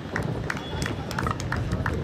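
Footballers' short shouts and calls carrying across an outdoor pitch, with sharp hand claps and a low wind rumble on the microphone.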